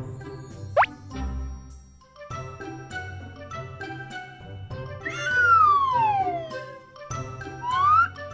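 Playful children's cartoon background music with cartoon sound effects: a quick upward swoop about a second in, a long falling glide around the middle, and a rising glide near the end.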